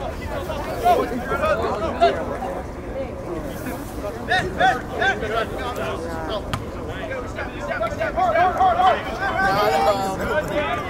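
Voices calling out during a soccer match over a background of crowd chatter, with louder shouts about a second in, in the middle and near the end.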